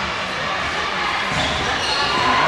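A volleyball bouncing on a hard gym floor, with voices chattering in the background.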